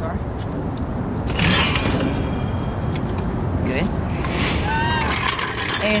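Hydraulic floor jack being worked under a car and released so the car comes down, over a steady low rumble, with a brief hiss about one and a half seconds in. A short voice is heard near the end.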